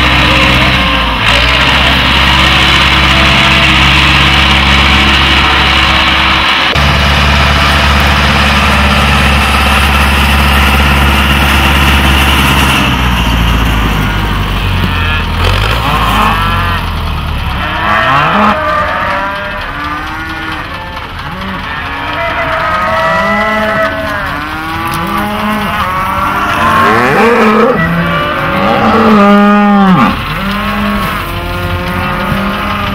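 A tractor engine running steadily, fading out about halfway through. Then cattle mooing again and again, many calls overlapping, loudest near the end.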